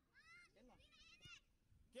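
Faint, high-pitched shouts of children on the pitch: a short call near the start and a few more about a second in, with a lower voice briefly between them.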